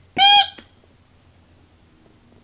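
A baby's short, high-pitched squeal, once, just after the start.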